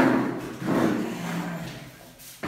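Moulded plastic chairs set down hard on a bare floor, two knocks that ring on in the echoing room, then a chair leg scraping with a low drawn-out groan as the chair takes a sitter's weight.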